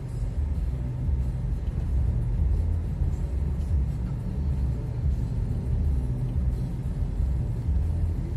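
Low, steady rumble of a car's engine and tyres heard from inside the cabin while driving slowly.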